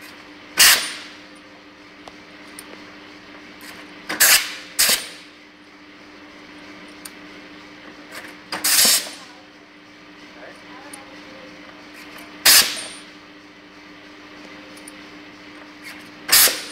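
A jig sizing undersized nuts meant for 15 mm copper pipe, working one nut every few seconds: five sharp strokes, two of them close together, each trailing off in a short hiss. A steady hum runs underneath.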